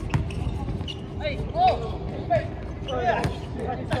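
Basketball bouncing on an outdoor hard court: a few sharp, separate bounces near the start and again late on, over a steady low hum, with players' voices calling out during play.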